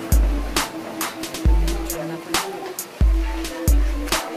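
Background music with a steady beat: deep bass notes and sharp drum hits repeating under sustained tones.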